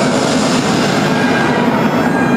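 A loud sound effect in the dance routine's track, played over the hall's speakers, cuts in suddenly in place of the music: a dense, rumbling clatter with a steady low tone.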